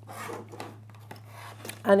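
Brief soft rubbing of quilted fabric being handled on a cutting mat, over a steady low hum.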